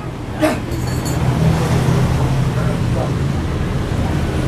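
Low, steady engine rumble of a motor vehicle, building about a second in and holding, with one short sharp sound near the start.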